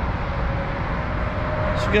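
Steady low rumble of outdoor vehicle and traffic noise, with a faint steady hum joining about half a second in. A man's voice starts near the end.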